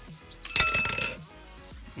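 Cutters snipping through an arrow-shaft rod: a sharp snap about half a second in, followed by a brief, bright metallic ring.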